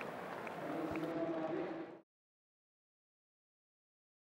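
Stadium crowd ambience from the pitch-side broadcast microphones, a steady wash of crowd noise with faint distant voices, that cuts off suddenly to silence about halfway through.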